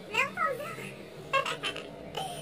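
A girl's voice making a few short vocal sounds that are not words: a brief gliding sound in the first half second, then a few short breathy bursts about a second and a half in.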